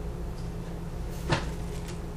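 Hands handling autumn olive berry sprigs, with one sharp tap a little past halfway and a few faint ticks after it, over a steady low hum.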